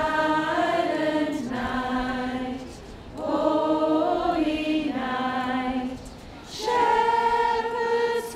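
A group of carol singers singing a Christmas carol together, in three slow phrases of long held notes with brief breaths between.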